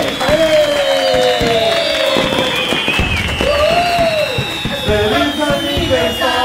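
Background music with long held notes that slowly bend in pitch.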